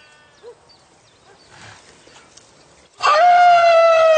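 A farm animal's loud, long call that starts suddenly about three seconds in and holds a steady pitch. Faint high chirps come before it.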